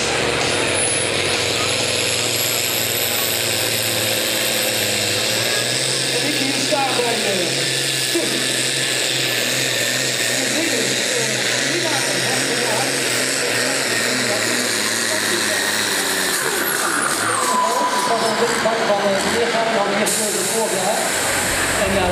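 Diesel pulling tractor on a full-power run, its engine note topped by a high whine that climbs steadily for about ten seconds. Around three-quarters of the way through, the pitch falls away sharply as the engine winds down at the end of the pull.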